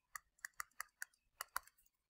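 A stylus tip tapping and clicking on a tablet's touchscreen during handwriting: about eight faint, sharp clicks at an irregular pace.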